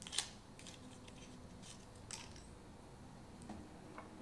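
Alcohol prep pad packet being torn open and handled: a few short, sharp crinkles of thin foil-paper packaging, the loudest just after the start.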